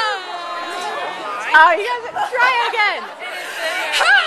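People chattering and calling out in high, excited voices whose pitch swoops up and down.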